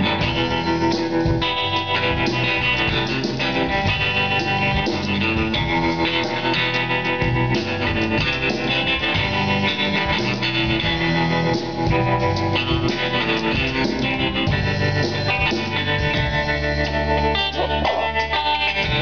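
Live country-blues band playing an instrumental passage, with guitar to the fore over bass guitar and drums.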